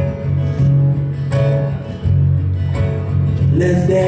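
Acoustic guitar strummed in a steady rhythm of chords, an instrumental stretch between sung lines.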